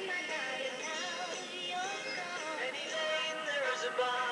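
A pop song playing, a sung melody over backing instruments.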